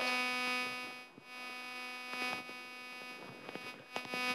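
Steady electronic buzz in the lecture-hall microphone system, a stack of even tones, loudest at the start, with a few faint handling clicks. It is unwanted interference that an attempted fix has not cured.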